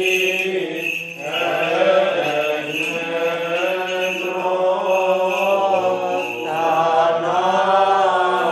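Greek Orthodox (Byzantine) liturgical chant: a voice sings long, slowly gliding melismatic lines over a steady low held note.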